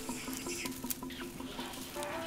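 Soft background music of held, stepping notes over a rapid, irregular patter of crackles from leaves and twigs rustling as macaques move through the tree branches.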